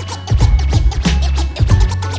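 DJ scratching a record on a turntable over a hip hop beat with a steady bass line.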